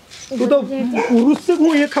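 Loud human vocalising: drawn-out, bending cries and exclamations from a person's voice that carry no words the recogniser could catch.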